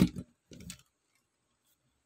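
A toy monster truck knocked against a tabletop as it is handled: a sharp knock right at the start, a smaller one just after, and faint handling noise about half a second in.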